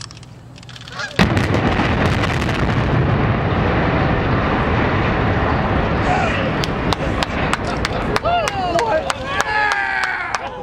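Explosive demolition charges going off on a highway bridge: one sudden loud blast about a second in, then a long, heavy rumble of the spans collapsing that lasts several seconds. Near the end, geese honk repeatedly over a run of sharp cracks.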